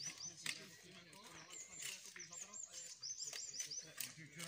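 A small songbird singing quick runs of short, hooked high chirps, three runs in all, over a low murmur of men's voices. A few sharp knocks come through, the loudest about half a second in.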